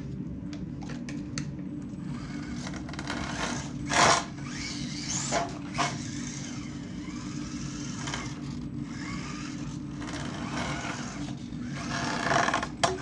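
Small 1/18-scale RC crawler's electric motor and gears whining as it drives across a concrete floor, the pitch rising and falling with the throttle, with a sharp knock about four seconds in. The oversized tyres are rubbing against the body.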